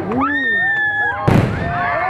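A firework bursts with a single loud bang about a second and a quarter in, over a crowd's overlapping cheers and exclamations.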